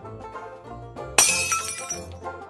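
Background music with plucked-string notes, cut across about a second in by a sudden shattering sound effect as an animated subscribe button breaks apart. The shatter is the loudest thing and fades out over most of a second.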